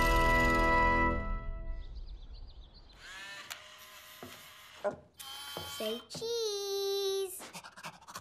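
A bright musical sting for a cartoon title card: a held chord that fades out over the first two seconds. After it come a few light clicks, then a high cartoon voice holding one long sound that falls in pitch and then stays level, about six seconds in.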